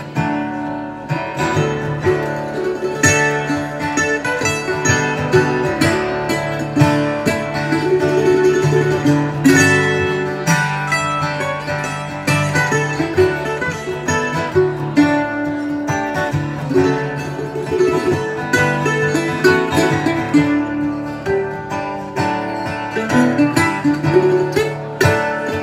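Live instrumental break on acoustic guitar and a second plucked string instrument playing together, with dense picked notes over steady strumming.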